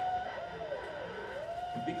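A single wailing tone, like a siren, that holds, dips and rises again, over faint background noise.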